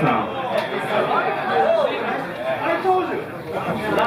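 Indistinct chatter: several people talking at once, with no music playing.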